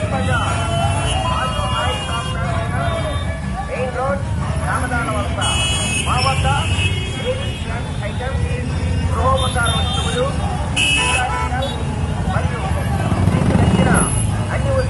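Many motorcycles running past in a slow procession, a steady engine rumble under loud overlapping voices. Vehicle horns sound twice, briefly, about five and a half seconds in and about eleven seconds in.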